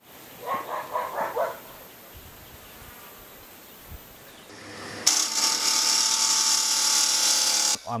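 Wood lathe turning, a gouge cutting into the spinning wood: a loud scraping hiss with a steady whine under it, starting suddenly about five seconds in and stopping just before the end.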